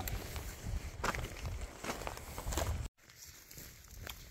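A hiker's footsteps on loose volcanic rock and cinders, a step roughly every 0.8 seconds. The sound cuts off suddenly about three seconds in, leaving a quieter stretch.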